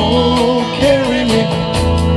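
Live rock band playing an instrumental passage on electric guitars, electric bass and drum kit. Steady drum hits run under a lead melody that slides and wavers between notes.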